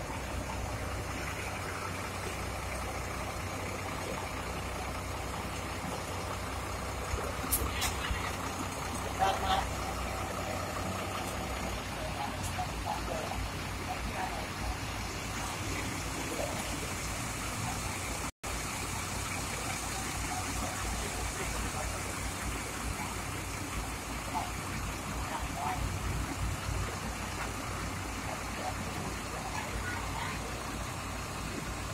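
Bus terminal ambience: a steady low rumble from large bus engines, with people's voices and a few sharp knocks in the first third. The sound cuts out for a split second about halfway.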